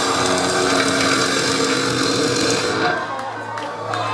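Metalcore band playing live at full volume: distorted guitars holding notes over a wash of cymbals, dropping off about three seconds in to a low steady hum.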